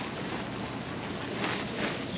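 Disposable surgical gown rustling as it is shaken open and pulled on: a dense, continuous rustle with a few louder swishes.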